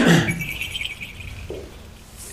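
A man's voice trailing off at the end of a word, then a faint high-pitched squeak lasting under a second.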